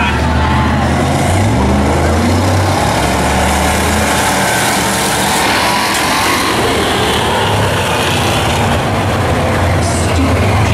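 A field of Bomber-class stock cars racing on an oval track, engines running hard and loud, with engine notes rising and falling as the cars go by.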